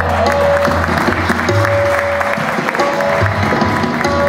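Audience applauding while the harmonium and tabla keep playing underneath.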